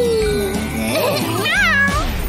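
Upbeat children's song backing music with a cartoon cat's meow near the end.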